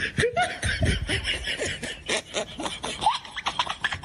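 A person laughing in a run of short, quick bursts, loudest in the first couple of seconds.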